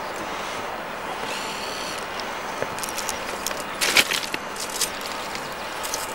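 Distant BR 50 steam locomotive working a train, heard as a steady rushing noise. About four seconds in comes a short, loud cluster of sharp crackles and clicks.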